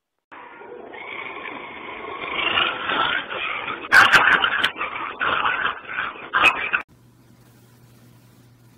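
A dog whimpering and yipping, growing louder from about a second in, with a few sharp knocks around the middle. The sound stops abruptly about seven seconds in.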